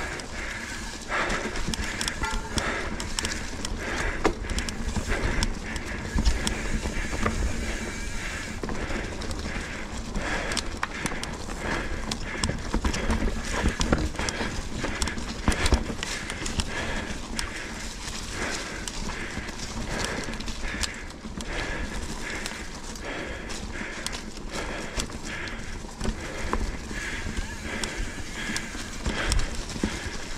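Mountain bike rattling and knocking as it is ridden fast over a leaf-strewn dirt singletrack, with frequent sharp clacks from the frame and drivetrain over bumps and roots, and tyre noise in the leaves.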